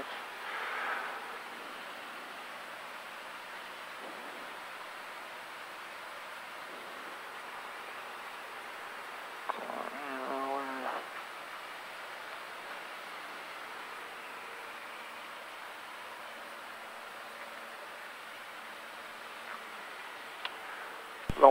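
Steady, muffled running noise of a light single-engine airplane's engine and airflow in the cockpit, as heard through the headset intercom, with the deep end cut away. A short voice sound breaks in about ten seconds in.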